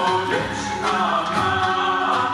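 Bulgarian folk song sung by a group of voices in chorus.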